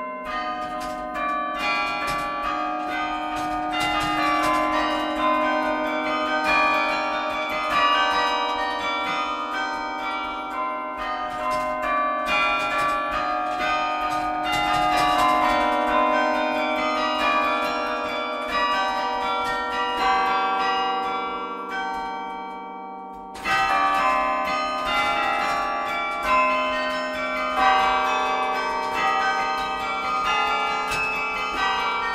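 Carillon bells played from the baton keyboard: a fast passage of many struck notes that overlap and ring on. About 21 seconds in the notes thin out and fade for a couple of seconds, then a loud new phrase starts about 23 seconds in.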